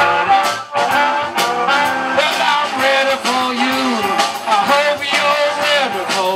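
Live blues band playing: a harmonica leads with bending notes over electric guitar, bass, drums and keyboard.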